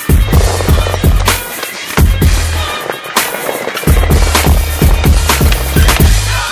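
Soundtrack music with a deep, heavy bass line and sharp drum hits, over skateboard wheels rolling on concrete and the clack of boards hitting the ground.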